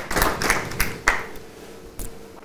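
A few people in a studio audience clapping briefly, dying away about a second in.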